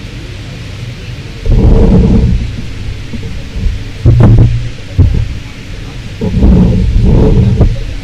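Four loud, boomy bursts of low rumbling through the lecture-hall microphone and PA, over a steady hum. The bursts come about one and a half seconds in, around four seconds, briefly at five seconds, and again from about six to seven and a half seconds.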